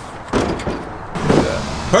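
Large wheel and mud-terrain tire set down into a pickup bed, landing with a sudden thud about a third of a second in, followed by a low scuffing rumble as it settles against the bed and the other tires. A voice comes in near the end.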